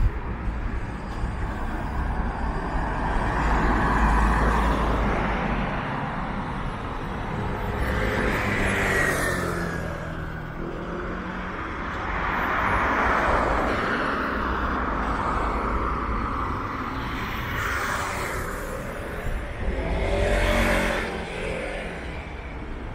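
Road traffic: cars and buses passing one after another, their engine and tyre noise swelling and fading. A vehicle's engine note stands out near the end.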